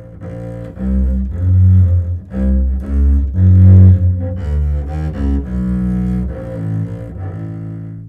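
Baroque double bass with gut strings, bowed, playing a slow bass line of held low notes that give the music an extra depth. The deepest, loudest notes come in the middle, and the line fades out near the end.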